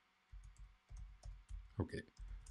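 Computer keyboard being typed on: a quick run of soft key presses, about seven in two seconds, each a faint click with a low thud.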